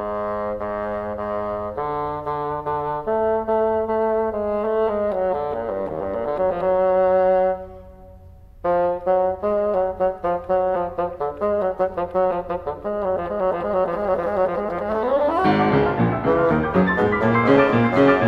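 Bassoon with piano in a classical suite: the bassoon holds long sustained notes, rests for about a second, then plays quick detached notes, and about fifteen seconds in the music grows suddenly louder and fuller.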